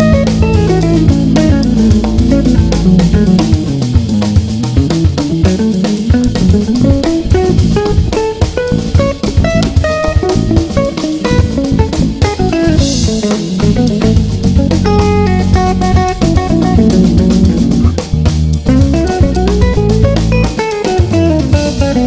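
Electric guitar played through a restored 1960 EkoSuper amplifier, a Vox AC30-style combo. The guitar plays fast single-note runs that climb and fall in pitch, over a backing track of bass and drums.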